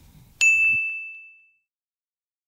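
A single bright ding, a bell-like chime sound effect, struck about half a second in and ringing out with one clear high tone for about a second.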